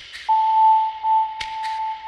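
Generative pentatonic ambient synthesizer music: a single clear sustained tone enters a moment in and holds. A pair of short sharp clicks repeats about every second and a half over a faint steady hiss.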